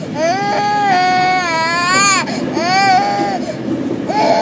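A toddler crying: one long wail of about two seconds, pitch rising slightly before it drops, then a shorter wail that falls away, over a steady low background noise.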